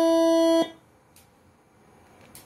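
A multi-trumpet telolet (basuri) air horn, driven by a Moreno MS5 module, holds one steady note that cuts off suddenly about half a second in. It then falls quiet except for a faint click about a second in.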